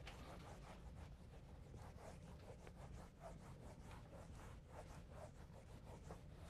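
Whiteboard eraser wiping marker off a whiteboard: a run of faint, quick rubbing strokes.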